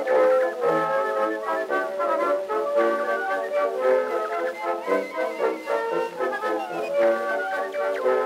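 Orchestral music played back from a 1904 Edison Gold Moulded wax cylinder, an acoustic-era recording: a busy run of short notes, thin in tone with almost no deep bass.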